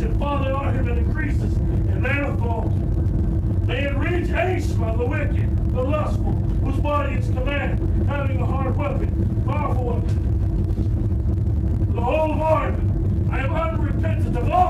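A voice speaking in short phrases that the recogniser did not write down as words, over a steady low rumble.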